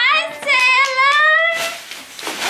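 A woman's high-pitched squeal of excitement: a quick rising cry, then one long held squeal, its pitch creeping upward, lasting about a second.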